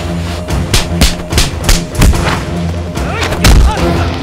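Action-film fight soundtrack: a loud background score under a quick run of punch and impact sound effects, several hits a second for the first two and a half seconds, then two more hits near the end.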